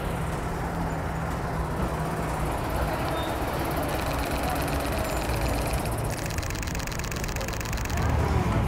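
A classic Volkswagen Beetle's air-cooled flat-four engine running as the car drives up a cobbled street, over steady street noise, with a low engine hum clearest in the first couple of seconds.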